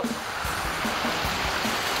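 Background music with a steady beat, over the steady rush of water pouring from a pipe into a trout pond.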